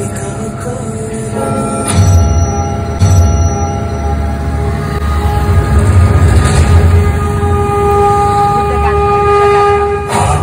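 Laser-show soundtrack played over loudspeakers: a deep rumble with sudden hits about two and three seconds in, under long held tones that grow stronger toward the end.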